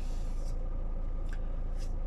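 Car engine idling, heard steadily from inside the cabin as a low, even hum.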